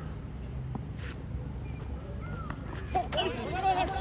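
Open-air ambience with faint distant voices. About three seconds in, players start shouting.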